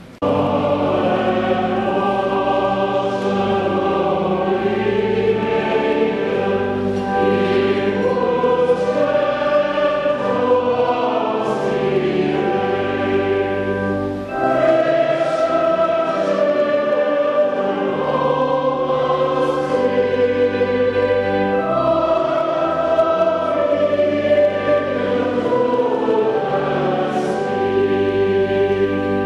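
Church choir singing in long sustained phrases, with a short break between phrases about fourteen seconds in.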